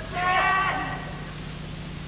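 A single drawn-out, high-pitched shouted call from a human voice, lasting under a second near the start, over a steady low hum.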